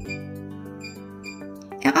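Soft background music, with three short high beeps about half a second apart as digits are tapped on a touchscreen keypad.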